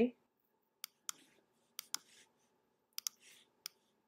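Computer mouse button clicks, about seven sharp, short clicks spread over a few seconds, some in quick pairs, while selecting and slicing shapes in design software.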